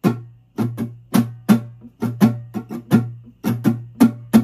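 Steel-string acoustic guitar with a capo, strummed in the song's verse rhythm: about a dozen quick strokes in an uneven, syncopated, repeating pattern, each chord ringing over a sustained low note.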